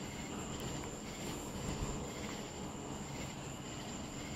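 BMW Z4 idling with a steady low hum, its headlights and fog lights on. Crickets chirp steadily throughout.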